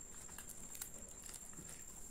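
Flaky laccha paratha being torn by hand, giving a few faint, sharp crisp crackles and ticks in the first second. A faint steady high-pitched whine runs underneath.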